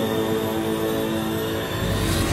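Magic-power sound effect: a sustained, shimmering drone that builds and gives way near the end to a rushing whoosh as the power is released.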